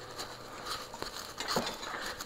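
A few faint, brief taps and clicks over quiet room tone.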